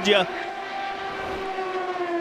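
IndyCar race cars' turbocharged V6 engines running on track, heard as a steady engine note made of several tones that drift slowly lower in pitch.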